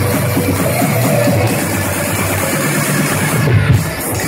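Loud electronic dance music from a DJ set, played over a club sound system, with heavy bass.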